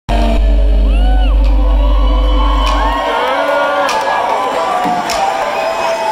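Live band music through a concert hall PA, with a heavy held bass note under the first three seconds that then drops out. The audience whoops and cheers over it.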